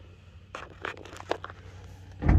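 A few light clicks and scrapes of hands handling test probes and equipment at an open breaker panel, three short clicks in the first second and a half, over a steady low hum.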